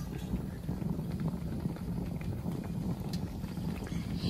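Large tamale steamer pot on the heat: a steady low rumble with faint scattered crackle from the water in the bottom simmering only weakly, just topped up with more water.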